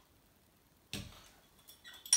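Glass bottles being handled on a kitchen worktop: one sharp knock about a second in that fades quickly, then faint small clicks near the end.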